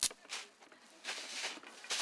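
Thin water jet from a hose nozzle hissing, louder from about a second in, after a sharp click at the start.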